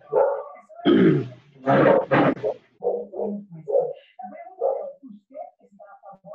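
A dog barking: several loud barks in the first half, the strongest about one and two seconds in, followed by quieter, shorter sounds.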